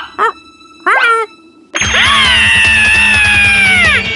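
Cartoon sound effects. First come a few short rising squeals, then about two seconds in a loud sustained whoosh-like whine starts; its pitch sinks slowly and drops away steeply at the end.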